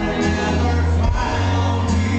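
Live country band playing a song: acoustic guitar and band with sustained chords over a steady bass, heard from the audience in a crowded hall.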